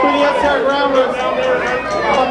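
A man talking into a microphone over a PA system, with crowd chatter behind him.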